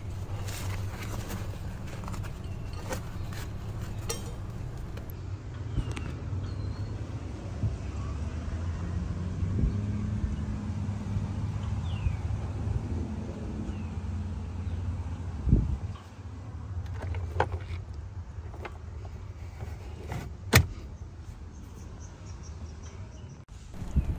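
Ford F-550 truck idling, a steady low hum, under scattered clicks and rustles of gear being handled in the cab, with two sharper knocks in the last third.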